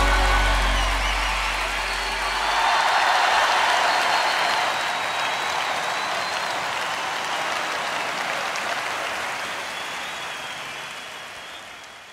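The last held chord of the band and orchestra dies away over the first couple of seconds. A large concert crowd's applause swells about two seconds in, then slowly fades out near the end.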